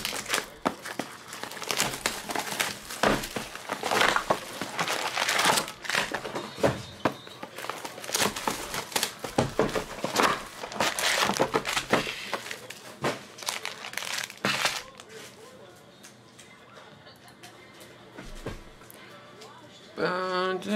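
Plastic shrink wrap on a 2019-20 Panini Prizm basketball hobby box crackling as it is torn open and crumpled, then foil card packs crinkling as they are pulled out of the box and set down. The crackling is thick for about fifteen seconds, then dies down to occasional soft handling sounds.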